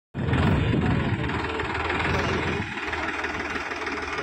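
Farmtrac 6042 tractor's diesel engine running under load while it drives a rear rotary tiller through wet mud. The deep low rumble is heaviest for the first two and a half seconds, then eases to a lighter, steady running sound.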